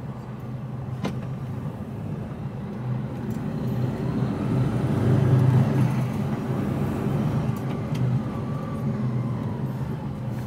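HGV lorry's diesel engine running, heard from inside the cab as the truck pulls along slowly. The engine note builds from about three seconds in to a peak a couple of seconds later and then eases, with a faint whine rising and falling over the same stretch. There is a single click about a second in.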